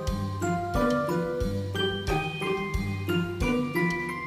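Background music: a tinkling, bell-like melody of quick short notes over a regular bass line.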